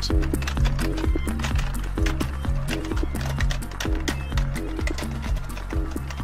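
Rapid, irregular clacking of typing keys, several clicks a second, over background music with a steady low bass.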